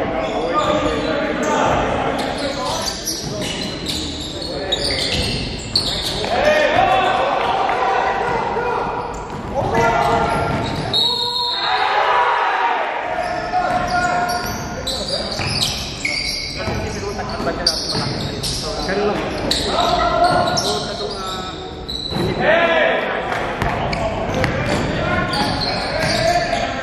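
Indistinct players' voices and calls through a live basketball game in a large gym, with a basketball bouncing on the hardwood court.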